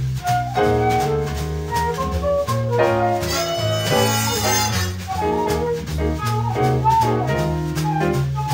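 Jazz band playing: saxophone and brass lines over a bass line that moves note by note, with drum kit.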